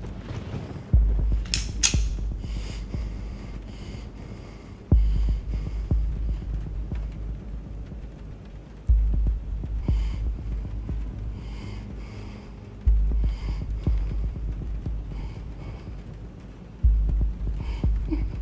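Film sound design: deep, low booms, one about every four seconds, each starting sharply and fading away over a low hum. A couple of sharp clicks come about two seconds in.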